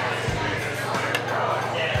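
Indistinct background voices over a steady low hum, with a small click about a second in.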